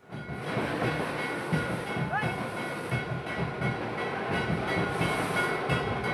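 The din of an outdoor crowd of supporters, with a dense, continuous clatter of irregular knocks under it and a few faint steady high tones.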